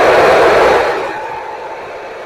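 FM transceiver speaker hissing with open-squelch static from the SO-50 satellite downlink right after the transmitter is unkeyed, loud at first and easing a little about a second in.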